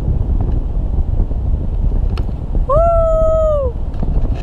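Airflow rushing over the camera microphone during a tandem paraglider flight, a steady low rumble. About three seconds in, one high-pitched, drawn-out whoop rises, holds for about a second and falls away.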